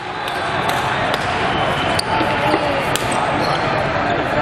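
Busy volleyball hall: a steady babble of many voices with scattered sharp smacks of volleyballs being hit and bounced on the courts, in a large hall.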